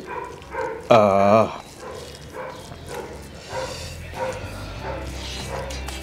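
A man's drawn-out, wavering 'mmm' about a second in, then quieter low sounds with a few faint murmurs.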